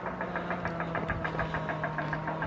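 An engine idling: a steady low hum with a fast, even ticking, about eight ticks a second.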